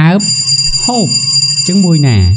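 A voice saying three short words with falling pitch, over a steady high-pitched ringing tone that comes in a moment after the start.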